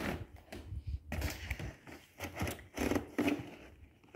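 Cardboard product boxes being handled inside a cardboard shipping box: irregular scraping, rustling and light knocks as one box is slid out from between the others.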